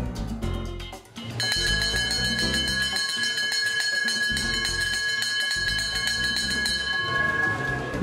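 A brass hand bell rung rapidly and continuously, starting about a second and a half in and stopping just before the end, over upbeat merengue background music.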